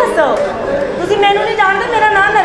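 Speech: a woman talking in a high, raised voice.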